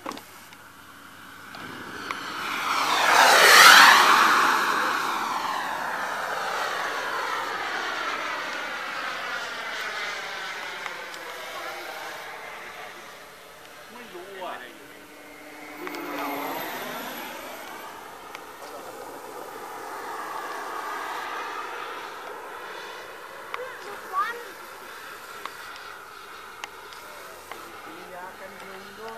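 Radio-controlled model airplane engine making low passes overhead. It is a high whine that swells to its loudest about three to four seconds in, then drops in pitch as the plane goes by. A second pass with a falling pitch comes a little past the middle, and the engine keeps running more quietly between passes.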